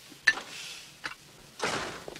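A china soup bowl is set down on its plate with a short clink, and a second light tap of tableware follows about a second later. Near the end comes a brief rush of noise.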